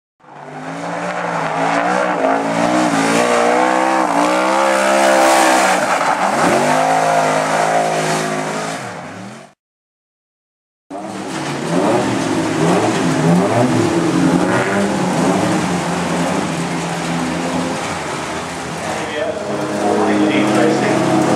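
Several car engines running and revving with pitch rising and falling, fading in and then out. After about a second of silence, the engines of small speedway sedans take over as a mix of steady running and revving.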